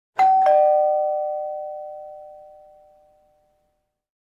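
Two-note 'ding-dong' chime: a higher note struck, then a lower one about a quarter-second later, both ringing on and fading away over about three seconds.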